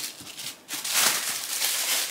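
Tissue paper rustling and crinkling as a gift box is unwrapped, starting faintly and growing louder a little under a second in.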